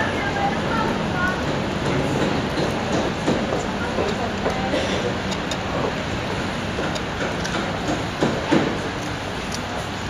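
Steady running and rail noise of a Vienna U-Bahn line U6 train, with voices in the background and a couple of sharp knocks near the end.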